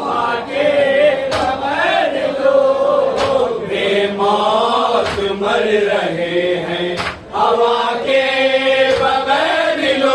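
A group of men chanting an Urdu salaam together in a steady melody. A sharp stroke of hands striking chests (matam) falls about every two seconds, in time with the chant.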